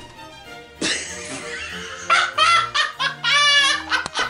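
Laughter over steady background music, with the laughing coming in bursts in the second half and loudest near the end.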